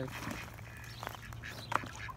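A mother bird and her young splashing in water as they are startled, with two short splashes about a second in and near the end.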